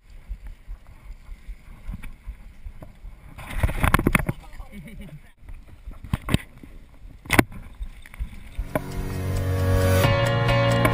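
Wind buffeting the microphone of a handlebar-mounted action camera on a moving bicycle, with rattling and knocks from the bike as it rides onto a bumpy dirt trail. The clatter is loudest about midway, and one sharp knock comes a little later. Music fades in near the end.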